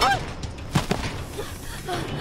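Sword-fight sound effects from a martial-arts film: a sharp hit right at the start and a second, harder hit about three quarters of a second in. Each hit comes with short cries that rise and fall in pitch.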